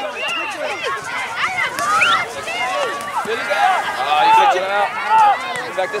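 Several voices calling and shouting over one another, with no clear words, from players and people on the sideline of a youth soccer game.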